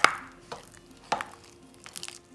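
Utensil knocking against a mixing bowl while a thick refried bean and cream cheese mix is stirred: one loud knock at the start, then fainter knocks about every half second.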